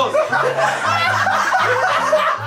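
Audience laughing at a stand-up comedy joke, with a steady low background music bed underneath.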